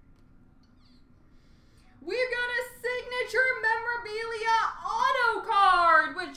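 High-pitched vocal sounds begin suddenly about two seconds in after near silence: held notes that step in pitch, then long sliding rise-and-fall glides.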